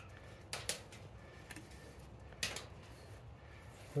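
Quiet room tone with a few brief, faint scuffs or clicks: two about half a second in and one about two and a half seconds in, as hands handle the exhaust silencer and the camera.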